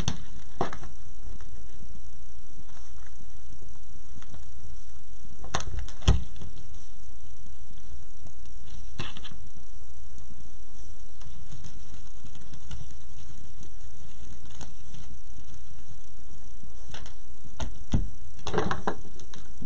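Steady background hum and hiss, with a few faint clicks and soft rustles from hands handling burlap and mesh craft pieces, the clearest click about six seconds in.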